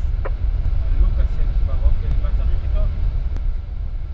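Steady low rumble of a moving ambulance heard from inside the cab, with faint voices underneath.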